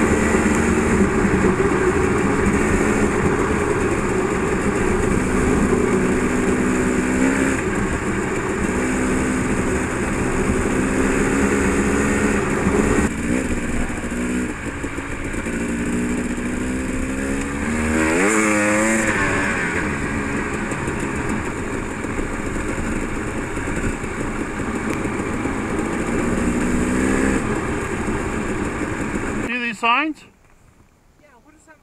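Dirt bike engine running at road speed, with wind rushing over the helmet-camera microphone. About halfway through, the engine note drops and then sweeps up and down as the bike slows, and the sound cuts off suddenly at the very end.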